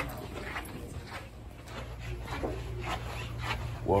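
Footsteps on a tiled floor, with a few short higher-pitched sounds among them, over a steady low hum.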